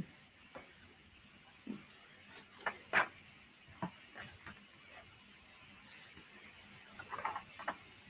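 Faint, scattered light clicks and taps of small objects being handled. The loudest tap comes about three seconds in, and there is a quick run of clicks near the end.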